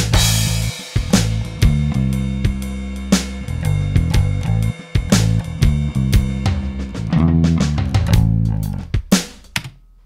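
Shuffle drum groove from MIDI clips, with an instrument played live along with it; a cymbal crash at the start. The music dies away and stops near the end.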